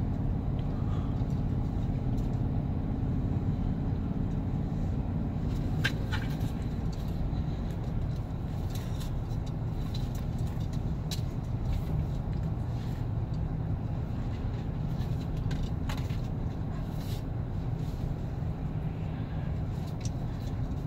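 Inside the cabin of a 2018 GMC Sierra 1500 with the 6.2-litre V8, cruising steadily at about 1,500 rpm while towing an 8,000 lb travel trailer. There is a low, steady hum of engine and road noise, quiet in the cabin, with a few faint clicks.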